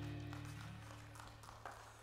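The final chord of a live worship band's acoustic guitar and keyboards ringing out and fading away, with the low sustained notes lasting longest.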